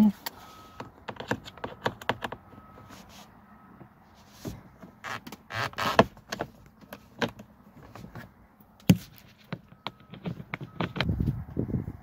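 A hand screwdriver turning out a screw from the plastic instrument cluster hood of a Mazda 6: scattered small clicks and scrapes of the tool against the screw and trim. There is one sharper click about nine seconds in, and a rustle of handling near the end.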